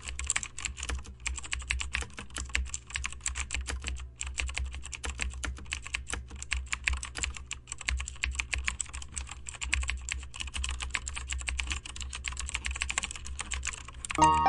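Computer keyboard typing: rapid, continuous keystrokes clicking with hardly a pause, over a steady low hum.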